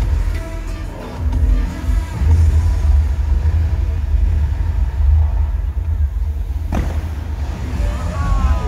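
Water and light show soundtrack playing over outdoor loudspeakers, heavy with deep bass rumble, with one sharp hit about seven seconds in.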